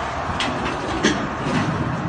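Roadside traffic noise: vehicles going by on a highway with a steady rush of road noise, and a couple of short sharp sounds.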